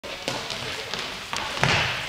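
A handball being passed, caught and bounced on the hall floor: a few short sharp knocks over the players' noise.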